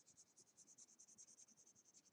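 Colored pencil scratching on paper in quick, evenly repeated short hatching strokes. The sound is faint.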